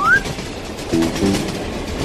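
Cartoon train-running sound effect: an even, steady noise, opening with a short rising tone, with a few short low notes about halfway through.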